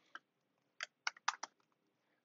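Faint computer keyboard keystrokes, about five separate taps spread over two seconds: typing the command that saves the file and quits the vim editor.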